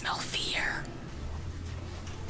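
A whispered voice saying a short line ("I smell fear") in about the first second, then a steady low hum of room tone.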